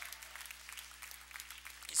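Congregation applauding in praise, many hands clapping in a steady scatter.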